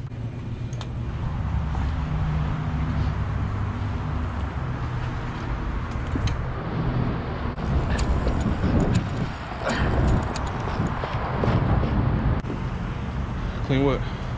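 Dirt bike and ATV engines running at idle in the street, with indistinct voices of people talking around them.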